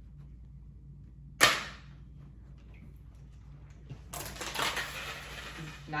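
A single sharp plastic clack about a second and a half in. From about four seconds a rough scraping hiss follows as a Tupperware lid is pushed sliding across the wood floor with a stick.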